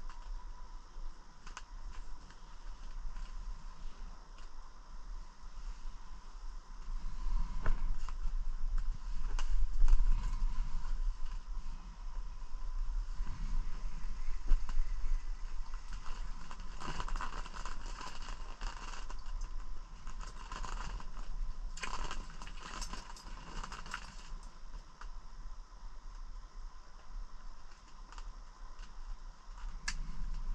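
Rustling, scraping and crackling from someone moving and handling gear inside a fabric ice-fishing shelter, with a few louder knocks and two thicker spells of crackling in the second half. A faint steady high tone and a low hum sit underneath.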